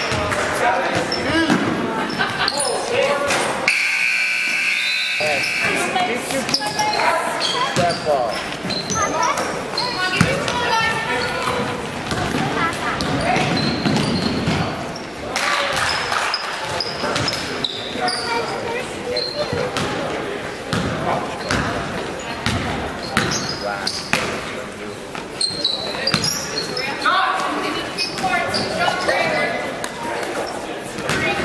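Basketball game sound in a gymnasium: a ball dribbling on the hardwood floor, with many voices of players and spectators calling out, echoing in the large hall. About four seconds in, a steady high tone sounds for about a second.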